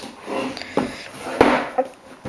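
A cardboard DVD box set handled and turned over by hand, rubbing and knocking, with a sharper knock against a wooden desk a little past halfway.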